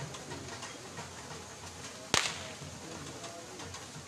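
A single sharp crack about two seconds in, far louder than the faint outdoor background around it.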